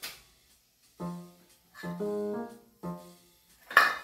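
Short electric piano jingle: a few notes in three brief phrases, followed near the end by a quick burst of noise.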